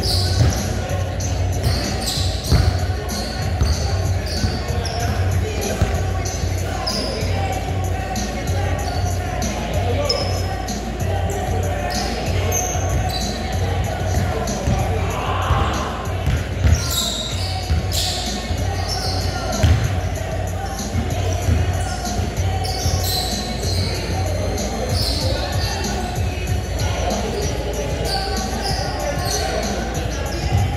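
Basketball striking a hardwood gym floor and the hoop during shooting practice, a sharp thud every few seconds, over a steady low background hum.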